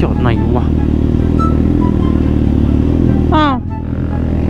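Kawasaki Z800's inline-four engine running steadily at low revs as the motorcycle rolls slowly along, easing off a little near the end.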